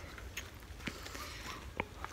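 Faint footsteps on a dirt trail, a few light scattered ticks over a low steady rumble from the handheld phone's microphone.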